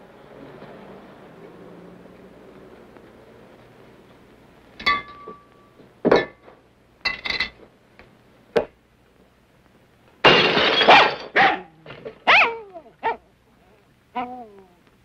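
A dog barking several times, loudly, in the last few seconds. Before it come a few short, sharp knocks and clinks.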